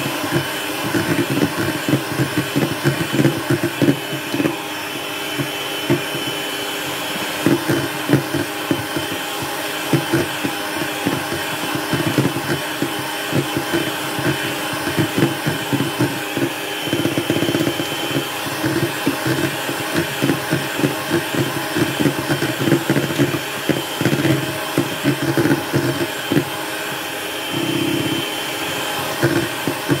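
Electric hand mixer running steadily, its beaters whipping a foamy egg batter, with irregular clattering all through.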